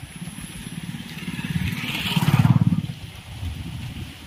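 A small motor vehicle's engine running with a rapid pulsing beat, growing louder to a peak a little past halfway and then fading, as if passing close by.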